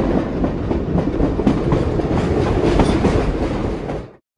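A steady, dense rumbling and rattling noise with many rapid small clicks, which cuts off suddenly at the very end.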